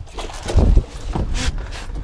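Wind rumbling on the microphone aboard an open fishing boat, loudest about half a second in, with a couple of short sharp noises, one near the middle.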